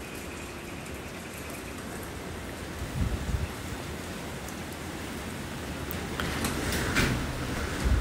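Steady hiss of rain and gusty wind. There is a low rumble about three seconds in, and a few sharp clicks near the end.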